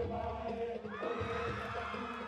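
Music with group chanting: sustained sung voices that rise in pitch about halfway through, over a low regular beat.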